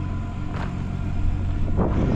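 Diesel semi-truck engine idling with a steady low hum.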